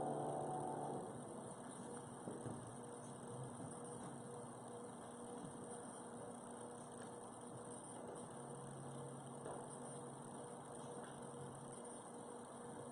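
A final musical chord fading out in the first second, then faint church room tone with a steady low electrical hum.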